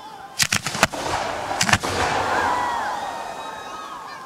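Aerial fireworks shells bursting: a rapid string of sharp reports about half a second in, two more about a second and a half in, then a fading hiss.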